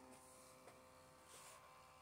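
Faint, steady whir of a PeriPage mini thermal printer's feed motor as it prints a photo and pushes the paper out.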